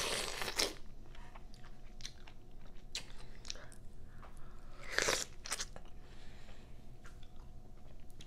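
Biting and chewing into a whole peeled pineapple eaten with no hands. The loudest bites come near the start and about five seconds in, with small clicks of chewing between.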